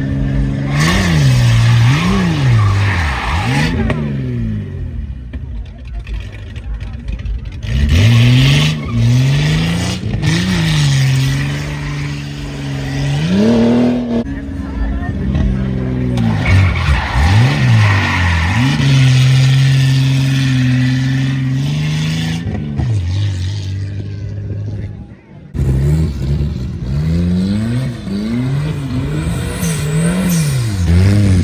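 Car engine revved hard, its pitch rising and falling over and over as the car is driven around a cone course, with a brief dropout about 25 seconds in.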